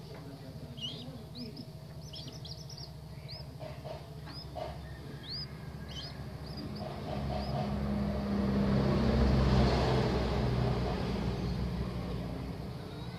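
Common moorhen chicks peeping, short high calls repeated many times over the first seven seconds or so. Under them runs a low engine hum that swells into the loudest sound in the second half and then fades, like a motor vehicle passing.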